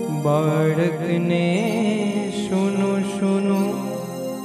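Jain devotional song (stavan) performed live: a singer holds long, wavering notes over a steady sustained accompaniment.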